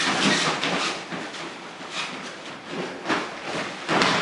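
Bare feet scuffing and bodies moving on a plastic sheet laid over a training mat: a steady crinkling rustle broken by a few sharp thuds.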